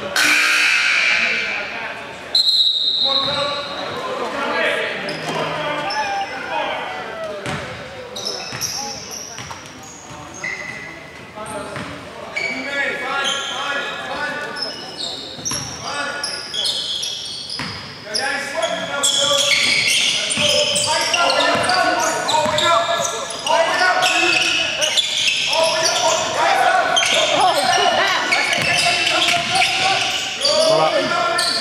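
A basketball being dribbled and bounced on a hardwood gym floor during live play, with indistinct players' voices calling out. The voices get louder in the second half.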